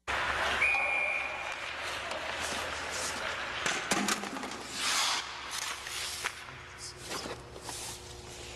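Indoor ice-rink sound with hockey pucks clattering out of a tipped metal bucket onto the ice just before four seconds in, among scattered knocks and scrapes in a reverberant arena. A short high steady tone sounds near the start, and a loud scraping swell comes about five seconds in.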